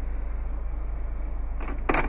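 Steady low hum of the RAV4's 2.5-liter four-cylinder engine idling, heard from inside the cabin. A couple of short clicks near the end as a hand takes hold of the gear shift lever.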